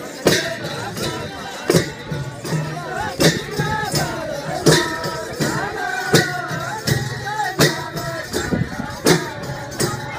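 Kauda folk music: a group of men singing while large hand cymbals clash on a steady beat, with drums. The loudest cymbal strokes fall about every second and a half, with lighter strokes between.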